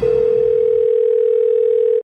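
A single steady electronic beep of one pitch, a little below 500 Hz, held for about two seconds and cut off abruptly.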